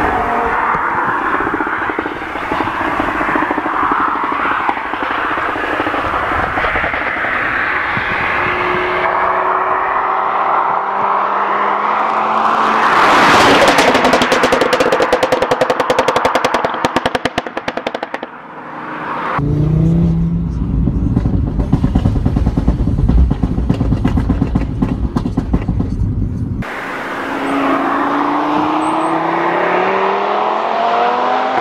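Tuned Audi RS3 five-cylinder engine accelerating hard through the gears, its pitch rising and falling with each shift. Partway through, a loud pass-by comes with rapid crackling exhaust pops and bangs from the pop-and-bang remap. A deep low rumble follows before it accelerates again near the end.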